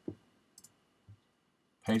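Two quick, faint clicks about half a second in, from working a computer while editing a colour code, followed by a faint low bump about a second in.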